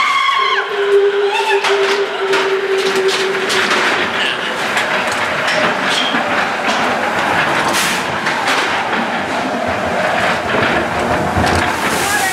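Roller-coaster bobsled car running along its steel track, a continuous rattling rumble with many sharp clacks from the wheels. A steady tone is held for about three seconds near the start.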